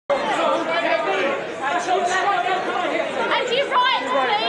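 Overlapping chatter of several people talking at once in a large hall, with no one voice standing clear.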